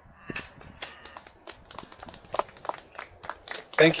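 A small group of people clapping: a thin, scattered round of separate hand claps rather than a dense roll of applause.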